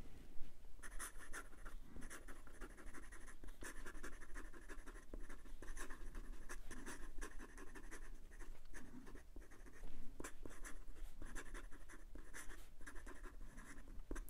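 Fountain pen calligraphy nib writing quickly on notebook paper: a run of short, irregular pen strokes with brief pauses between words.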